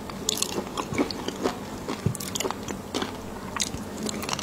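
Close-miked chewing of raw shrimp coated in fish roe and spicy seafood sauce: a steady run of short wet clicks and crunches.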